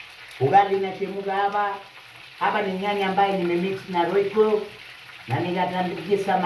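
A man singing a short phrase three times in long held notes, over the steady sizzle of meat frying in a pan on a gas stove.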